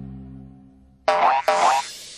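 A held music chord fading away, then two short cartoon-style sound effects in quick succession, each with a quick upward bend in pitch.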